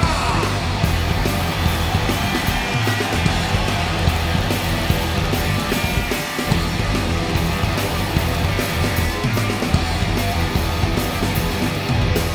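Live rock band playing an instrumental passage without vocals, with electric guitar to the fore, loud and dense.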